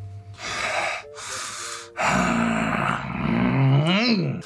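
A man blowing out two hard breaths, then a drawn-out vocal groan that sweeps up in pitch near the end.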